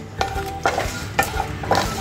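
A wooden spatula is stirring whole spices frying in hot oil in a nonstick kadhai. The oil sizzles under scraping strokes that come about twice a second.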